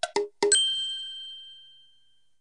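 Chime jingle: a quick run of short, struck bell-like notes ending on a single ringing ding that fades away over about a second and a half.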